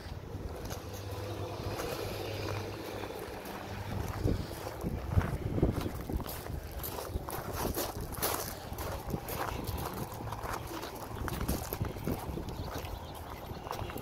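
Footsteps on gravel: irregular short crunches from about four seconds in, over a low outdoor rumble.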